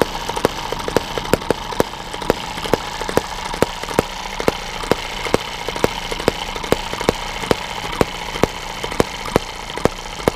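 Eachine EM2 miniature hit-and-miss model engine running on Shellite with 50:1 synthetic oil: sharp firing pops at uneven spacing, about two to three a second, as the governor lets it fire and then coast, over a steady mechanical whirr.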